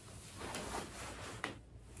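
Soft rustling of clothing and a knitted wool sweater as a person moves and turns, with a light click about one and a half seconds in.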